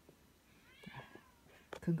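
A short high-pitched animal cry, falling in pitch, about half a second in.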